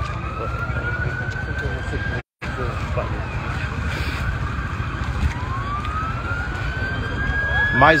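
Emergency-vehicle siren on a slow wail, its pitch climbing in long sweeps, twice, over a steady low rumble. The sound cuts out for a split second about two seconds in.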